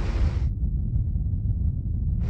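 Animated sound effect of a spacecraft's small thruster firing: a hiss burst that cuts off about half a second in, over a steady low rumble.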